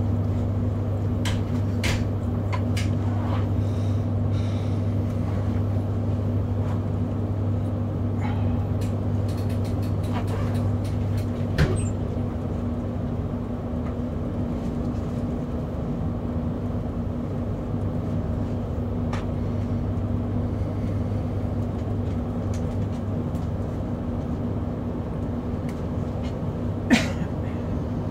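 Cabin noise of an electric passenger train under way, heard from inside the carriage: a steady low hum with scattered sharp clicks, the loudest about twelve seconds in.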